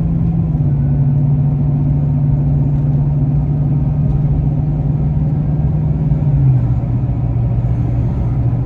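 A car's engine and road noise heard from inside the cabin while driving: a steady low drone that dips slightly in pitch about six and a half seconds in.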